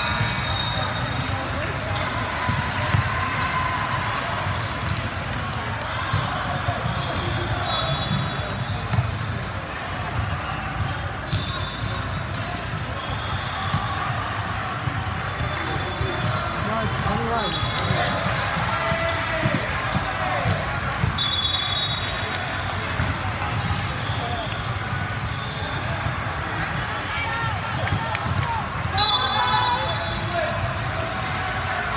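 Busy indoor volleyball hall: a steady babble of voices and echoing ball bounces and hits, with short high referee whistle blasts now and then, one just after the start and one near the end.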